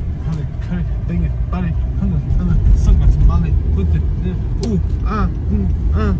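Steady low road and engine rumble inside a moving car's cabin, with a voice singing in an even rhythm over it, about two syllables a second.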